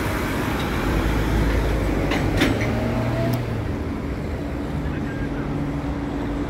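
Street traffic, with motor vehicle engines running steadily and a few short sharp clicks or knocks between about two and three and a half seconds in.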